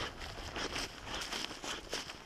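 Footsteps crunching through dry grass and reeds, with clothing rustling close to the microphone: a dense, irregular crackle with no single loud event.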